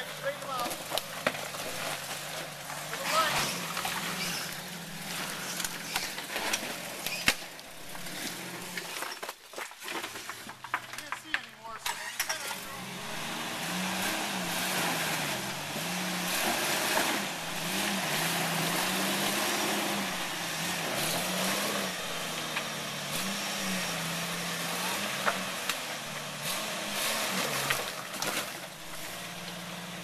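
Jeep Wrangler YJ engine running at low speed while rock crawling, repeatedly revving up and easing off as the tires work over rocks. Scattered knocks and scrapes from the tires and underbody on the rocks.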